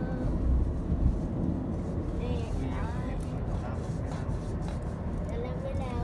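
Steady road and engine rumble inside the cabin of a car driving along a highway, with short snatches of voice.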